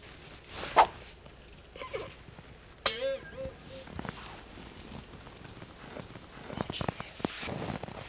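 Quiet room with a few brief non-word voice sounds, including a short hummed 'mm' about three seconds in, and soft shuffling movement near the end as a person gets up off the rug.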